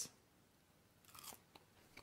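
A brief, faint crunch of a French fry being chewed about a second in; otherwise near silence.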